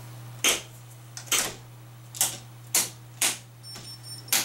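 DC circuit breakers in an off-grid solar power panel being snapped on one after another, five sharp clicks and a fainter one, as the inverters, battery monitor and charge controllers are switched back on. A faint high whine starts near the end as the system powers up.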